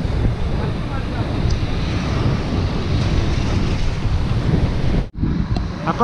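Wind buffeting the microphone of a camera riding on a moving bicycle: a steady, rumbling rush heaviest in the low end. It cuts out abruptly for a moment about five seconds in.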